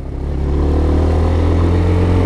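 Chinese-made 200cc single-cylinder supermoto engine running under way, its pitch rising slowly as the bike gently accelerates. The bike is on its stock exhaust, which is pretty quiet.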